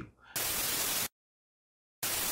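Glitch-transition sound effect: a burst of hissing static, like TV static, starting about a third of a second in and cutting off suddenly after under a second, followed by dead silence.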